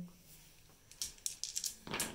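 A handful of six-sided dice rolled onto the table, clattering in a quick run of clicks about a second in, with one more click near the end.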